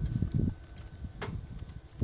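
Low, uneven rumbling from wind and handling on a phone microphone, mostly in the first half second, then a faint tick about a second in.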